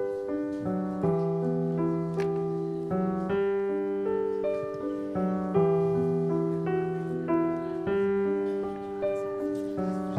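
Keyboard playing the slow introduction to a hymn: a melody over held, sustained chords, with notes changing about every half second, before the singing begins.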